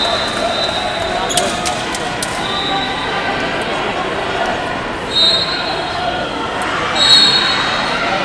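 Echoing background of a busy wrestling tournament hall: crowd chatter, a few sharp claps or slaps about a second and a half in, and several short, shrill whistle blasts, the loudest about five and seven seconds in, typical of referee whistles from nearby mats.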